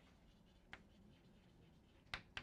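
Chalk writing on a blackboard, very faint: near silence with one light tap of the chalk about three quarters of a second in.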